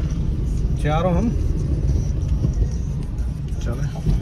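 Inside a moving car: a steady low rumble of engine and road noise.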